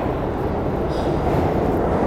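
New York City subway train running alongside the platform: a steady, loud, low rumble of the cars on the rails.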